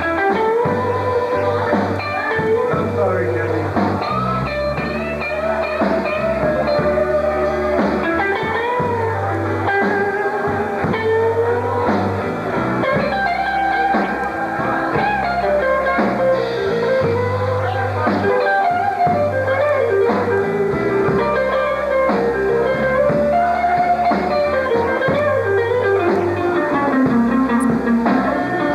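Live blues band playing: electric guitars over a steady bass line and drums, with a wavering lead melody on top.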